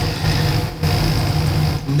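Steady low rumble of background noise with a faint high hiss above it, dipping briefly twice.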